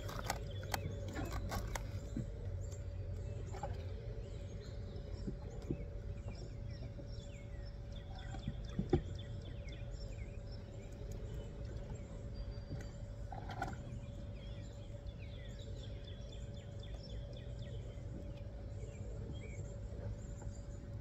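Small birds chirping on and off over a steady low rumble, with a few light clicks in the first two seconds and one sharper knock about nine seconds in.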